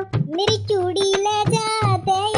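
A high-pitched female voice singing a bhaat folk song in long held notes, over a dholak drum beat.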